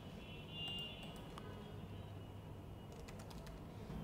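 Faint computer keyboard typing: a few soft key clicks in two short runs, one near the start and one about three seconds in.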